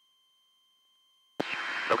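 Near silence with faint steady tones, the headset and radio audio feed gated off. About one and a half seconds in, it cuts back in with a hiss of cabin and engine noise, and a man's voice starts near the end.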